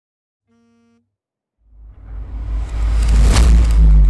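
Logo-intro sound effect: a faint short tone, then a deep rumble and whoosh that swells from about a second and a half in and peaks with a bright rush about three and a half seconds in.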